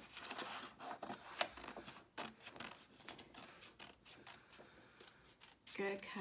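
Small red-handled scissors snipping through a paper craft sheet in a run of short, irregular cuts.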